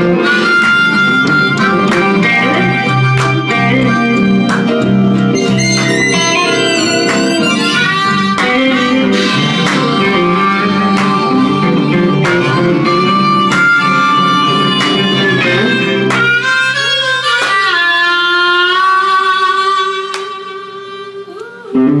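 Live blues band with amplified blues harmonica played through the vocal mic over electric guitars. About three quarters of the way through the band drops out, leaving a long held, bending note that fades until the band comes back in loudly at the very end.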